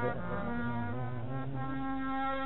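Harmonium accompaniment to a bhajan, in an instrumental gap between sung lines: held reedy notes over a steady drone, with a lower part that shifts in pitch.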